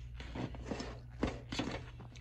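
A spoon stirring a thick baking soda, vinegar and dish soap paste in a plastic tub, knocking and scraping against the sides in quick, irregular strokes.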